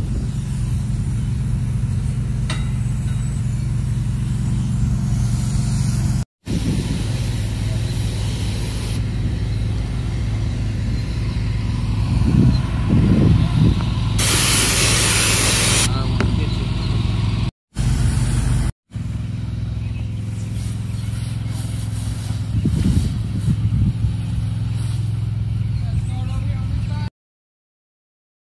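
A heated pressure washer's engine runs steadily under the hiss of its spray wand, with a much louder burst of spray hiss about two-thirds of the way in. The sound cuts out briefly three times, once about a quarter in and twice close together past the middle.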